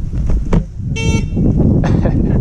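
Wind rumbling on the microphone of a moving e-bike. About a second in there is a short, single horn toot.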